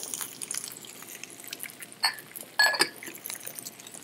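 Chopped vegetables sizzling and crackling in hot olive oil in a frying pan as celery is tipped in to saute. A couple of short knocks or clinks sound about two to three seconds in.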